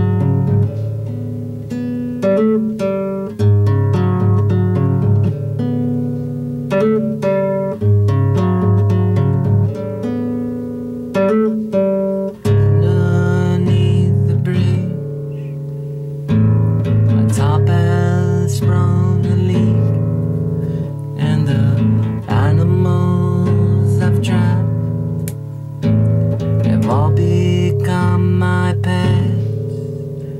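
Acoustic guitar played with picked notes and chords, turning to fuller strummed chords from about halfway, with a man's voice singing along in the second half.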